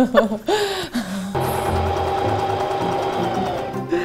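Singer sewing machine running steadily for about two and a half seconds, stitching a test scrap in free-motion mode with the feed dogs lowered. It starts after a short laugh about a second in and stops just before the end.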